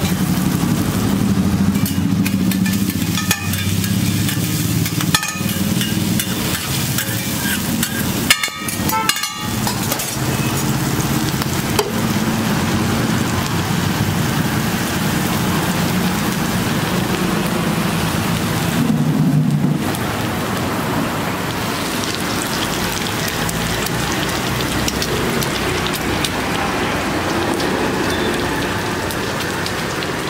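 Chopped onions, tomatoes and coriander frying in oil on a large flat griddle: a steady sizzle with a low hum beneath and a few sharp knocks about 5 and 9 seconds in.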